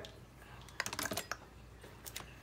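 Light, quick clicks of plastic marker pens being handled and picked up, a cluster of several about a second in and one more near the end.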